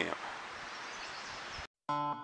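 Steady outdoor background hiss with no distinct events. It cuts to a moment of silence near the end, and instrumental music with held tones begins.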